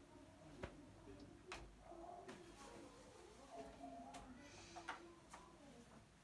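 Near silence: faint room tone with a few soft, scattered clicks and a faint low murmur.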